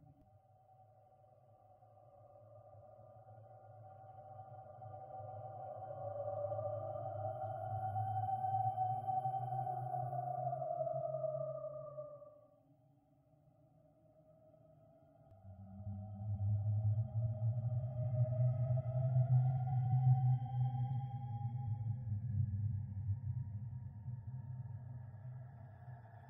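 Synthesized horror ambience: a low drone under eerie sustained tones that swell slowly, fade away about half-way through, then swell back in with the drone.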